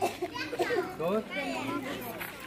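A group of young schoolchildren chattering and calling out over one another, several high voices at once with no single clear speaker.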